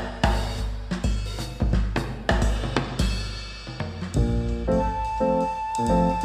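Background music with a drum-kit beat; about four seconds in, held melodic notes come in over the drums.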